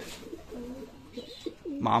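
Domestic pigeons cooing softly, several low wavering coos one after another.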